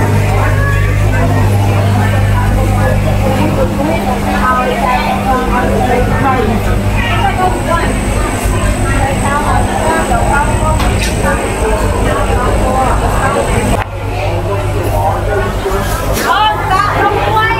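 Market crowd chatter, vendors and shoppers talking over one another, above a steady low machine hum. The hum cuts off about fourteen seconds in, with a brief drop in loudness.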